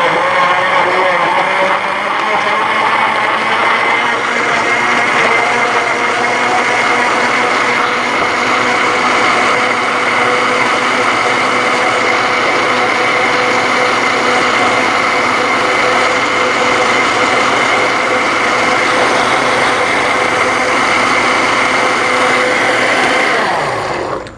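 Countertop blender running with the lid off, blending about a cup of peach, milk and yogurt smoothie. Its motor whine rises in pitch over the first few seconds, holds steady, then cuts off just before the end.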